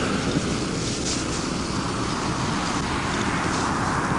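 Steady highway traffic noise, an even roar with no single event standing out.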